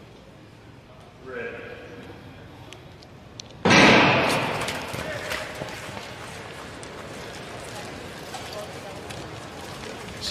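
Short-track starting gun firing about four seconds in with a single loud bang, followed by the arena crowd cheering as the race gets under way; a brief call, typical of the starter's command, comes shortly before the shot.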